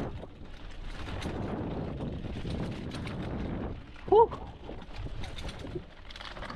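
Mountain bike rolling fast down a dirt singletrack: knobby tyres on dirt and the bike's rattle, a steady noisy rumble with small ticks that eases after about four seconds.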